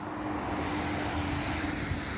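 Steady noise of traffic passing on the road, a smooth rushing sound with a faint low hum beneath it.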